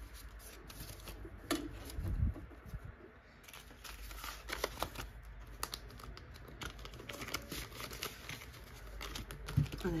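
Paper banknotes rustling and crinkling as a stack is handled and slid into a clear plastic binder pocket, with scattered small crackles throughout.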